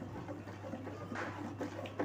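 Faint stirring of thick, custard-thickened milk with a metal ladle in an aluminium kadhai: soft scrapes and swishes, a few more noticeable about a second in, over a low steady hum.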